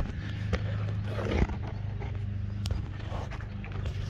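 A steady low mechanical hum, with a few faint knocks and clicks over it.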